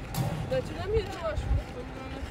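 Tennis ball thumping softly on a clay court, with a sharp knock of a ball being struck just after the start, under distant voices.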